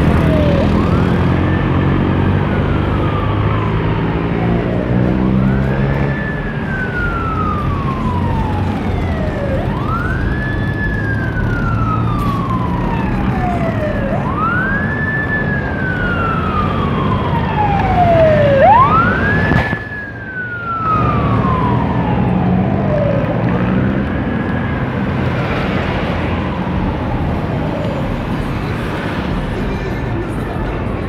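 An emergency-vehicle siren in a slow wail, each cycle rising quickly and falling slowly, repeating about every four and a half seconds, seven times, loudest about two-thirds of the way through. Under it runs the low rumble of road traffic and engines.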